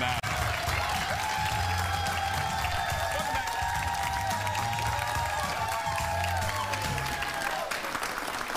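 Studio audience clapping over music with a steady bass line; the music fades out near the end.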